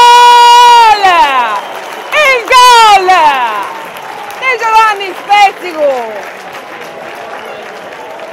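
A football commentator's long, held goal shout that falls in pitch about a second in, followed by several shorter excited shouts as he calls the goal.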